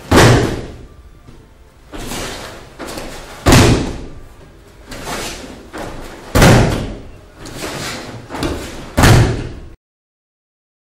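Bodies of martial artists in gi slamming onto tatami mats as they are thrown and break-fall: four loud slams about three seconds apart, with lighter thuds and stamps between. The sound cuts off suddenly near the end.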